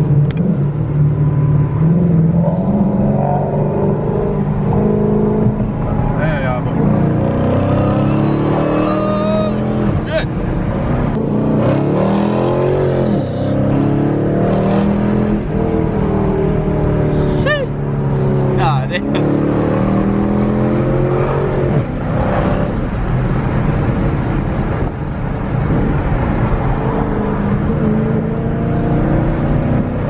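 A 5.7 Hemi V8 engine heard from inside the car's cabin while driving, its note rising and falling several times as it accelerates and shifts, with a few sharp pops.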